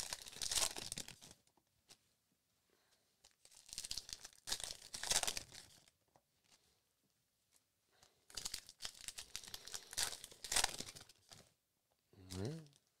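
Topps Allen and Ginter baseball card pack wrappers being torn open and crinkled. The sound comes in three crackly bouts of one to three seconds each, with quiet gaps between.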